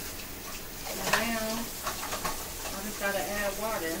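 A woman's voice in two short phrases, over a steady sizzle from sauce cooking in a pot on the stove.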